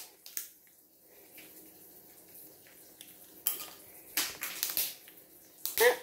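A blue-and-gold macaw cracking a pecan shell with its beak: a few sharp cracks and crunches, one about 3.5 s in and a cluster between 4 and 5 s.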